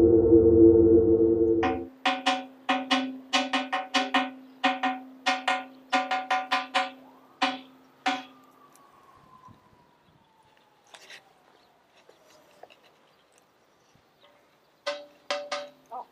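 Music stops about two seconds in. Then a granite vessel is struck by hand over and over, about three times a second for six seconds. Each hit rings with the same clear note, like a bell, and a few more strikes come near the end.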